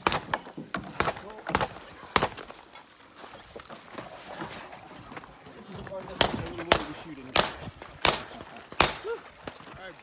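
Gunshots fired singly at an uneven pace of one or two a second. There is a string of about five in the first two seconds, then a lull, then a second string from about six seconds in to near the end.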